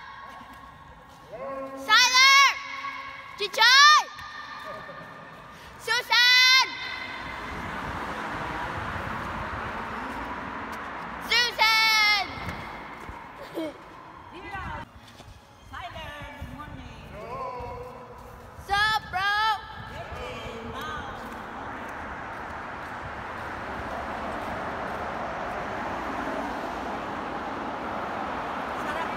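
A young person's high-pitched wordless whoops echoing in a pedestrian tunnel. Each is a short rising-then-falling call: three in the first seven seconds, one near the middle and a pair around two-thirds of the way in. Between the calls, steady traffic noise swells as cars pass through the tunnel, loudest near the end.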